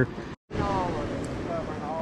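A man's word trailing off, a brief cut to silence, then steady outdoor background hiss with faint distant voices.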